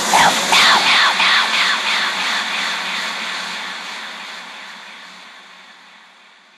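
Afterhours FM station ident tail: the spoken "After Hours" repeating through a delay echo about three times a second, each repeat fainter, over a whooshing swell that fades out.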